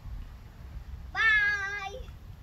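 A single high-pitched, drawn-out vocal cry, nearly level in pitch with a slight waver, starting a little past the middle and lasting just under a second before cutting off.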